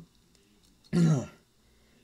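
A person clearing their throat once, about a second in.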